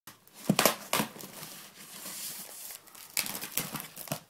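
Cardboard box being handled and opened: crinkling, rustling cardboard with sharp knocks and crackles about half a second and one second in, and another burst about three seconds in.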